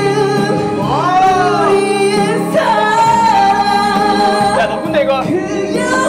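Singing into a microphone over a backing track: long held notes that waver and slide in pitch.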